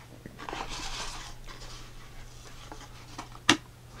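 Hands handling a cardboard box and its contents, giving soft rustling and rubbing, then one sharp knock about three and a half seconds in.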